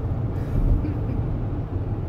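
Steady low rumble of a 2016 Toyota Highlander V6 AWD cruising at road speed, heard from inside the cabin: the engine running smoothly under the hum of the tyres on the road.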